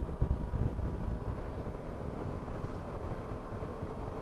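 Wind rumble buffeting a helmet-mounted microphone over the steady drone of a Yamaha Tracer 900's three-cylinder engine cruising at road speed.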